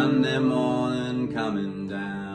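A man's voice holding a long, slowly bending wordless sung note over a ringing steel-string acoustic guitar.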